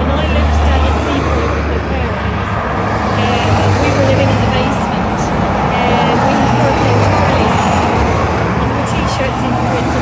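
Road traffic at a busy junction: cars driving past with a steady wash of engine and tyre noise and a low engine hum throughout.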